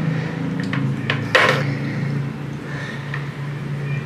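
Metal hand tools and a wire being handled and lifted out of a bucket of electrolysis water: a few light clinks and knocks, with one short louder rattle about a second and a half in. A steady low hum runs underneath.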